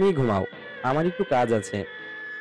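A person's voice in short vocal bursts, each falling in pitch, over a steady held background music drone.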